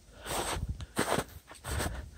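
Footsteps walking through snow, about three steps.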